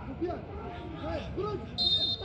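Short shouts from players on the pitch with no crowd noise, then near the end a referee's whistle blows, a steady shrill tone signalling the free kick to be taken.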